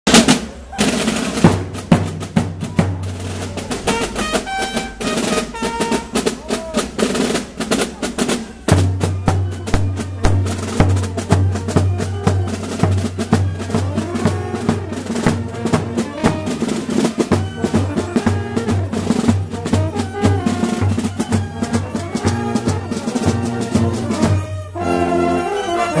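Marching brass band playing in the street: bass drum and snare drums beat throughout, with sousaphone, tubas and trumpets. The low brass line comes in strongly about nine seconds in.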